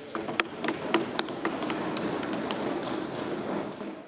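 Applause from members in a parliamentary chamber: a few sharp separate claps, then steady clapping that fades near the end.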